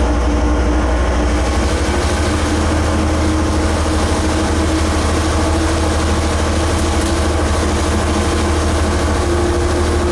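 DL-class diesel-electric locomotive heard from inside its cab as it gets under way: a steady diesel engine drone whose low note shifts up about a second and a half in, with a whine that slowly rises in pitch.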